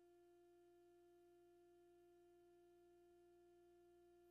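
Near silence, with only a very faint steady tone underneath.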